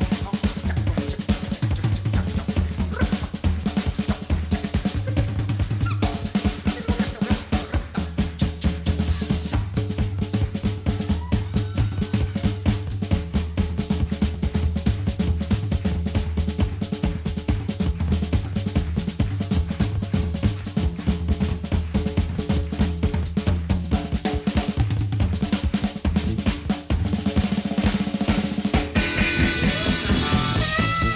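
Live blues-rock band in a drum-led instrumental stretch: a drum kit played busily with fast snare and tom strokes and bass drum over a pulsing low end. Near the end sustained pitched notes come back in, with guitar following.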